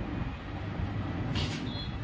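Steady low background rumble with a short hiss about a second and a half in.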